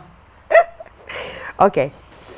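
A woman's voice: a sudden short vocal sound with falling pitch about half a second in, a breathy rush of air, then a spoken "Ok."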